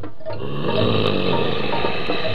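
Cartoon vocal sound effect of a caveman straining and gnawing as he tries to bite into a woolly mammoth. It is a rough, noisy throat sound that starts about half a second in, with background music playing.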